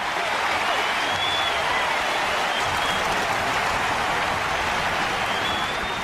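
An audience applauding steadily, with a few faint whistles, dying down a little near the end.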